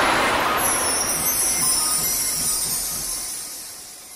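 Whoosh sound effect for an animated logo: a rushing noise that fades steadily away, with a high hiss sliding downward in pitch.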